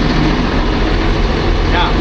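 Gradall XL4100 excavator's Cummins diesel engine idling steadily, heard from inside its cab, with the even hiss of the cab's heater fan blowing through the vents.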